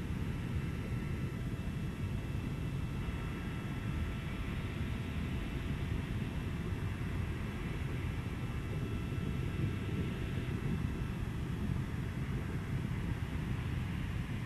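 Steady low rumble of a Falcon 9 first stage's nine Merlin 1D engines firing during ascent, carried on the rocket's onboard camera audio, with faint steady high tones above it.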